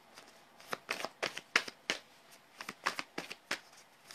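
A deck of oracle cards being shuffled by hand: a run of quick, irregular card snaps and clicks, with a short pause about halfway.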